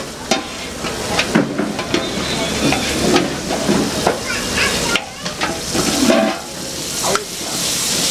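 Paneer masala sizzling in a steel frying pan on a gas burner, with a metal spoon scraping and clinking against the pan many times as it is stirred.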